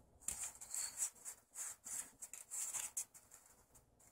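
Foil trading-card booster pack being torn open and the cards slid out: a run of faint crinkles and rustles.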